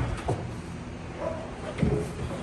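A young Malinois gripping and pulling on the arm of a jute bite suit: scuffling, with short thumps near the start and again near the end as the dog and the suit shift against the platform.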